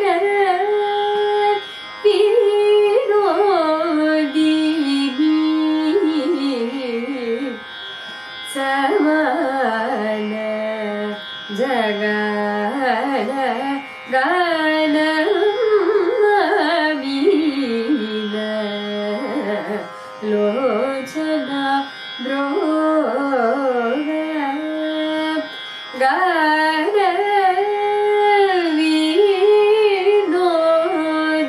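A woman singing Carnatic vocal music solo, her voice gliding and oscillating between notes in ornamented phrases, over a steady drone. The voice breaks off briefly for a breath every five or six seconds.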